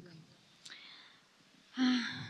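A woman breathing in audibly close to a handheld microphone, then a short voiced hesitation sound near the end.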